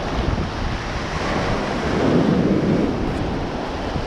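Shallow surf washing in over the sand around the feet, a steady rush of water that swells about two seconds in, with wind buffeting the microphone.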